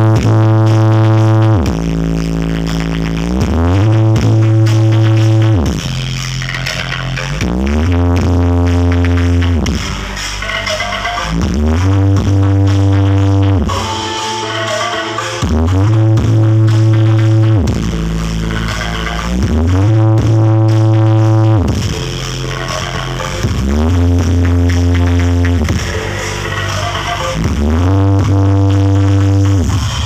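Loud electronic bass music played through a huge truck-mounted speaker rig. A deep, booming bass phrase swells in with rising pitch sweeps and repeats about every four seconds.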